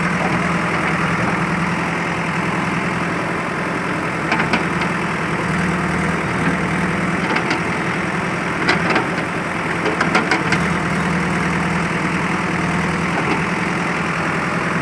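JCB backhoe loader's diesel engine running steadily while the bucket works a pile of earth and rubble, with a few brief clatters scattered through.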